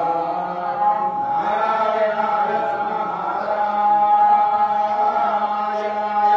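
A group of men's voices chanting a ritual song in unison, holding long, drawn-out notes.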